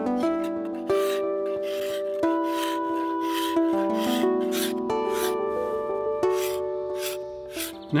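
A steel cabinet scraper drawn in repeated strokes along the belly of a yew bow stave, about two scraping strokes a second, shaving the wood down. Background music with held, changing chords plays throughout.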